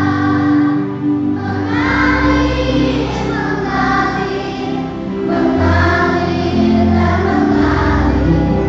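Children's choir singing an Indonesian Christian song, with sustained low accompaniment notes underneath.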